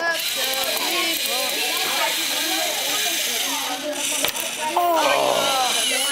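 Several children talking at once, too overlapped to make out words, over a steady hiss.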